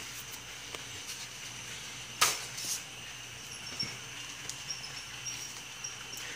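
A paper envelope being opened and a card drawn out by hand: faint paper rustling and small clicks, with one short, louder rip of paper about two seconds in.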